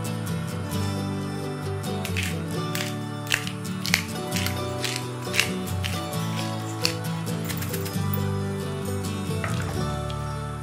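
Background music with steady held notes, over which a pepper mill grinds black pepper, giving a run of short crunchy clicks about two a second for several seconds in the middle.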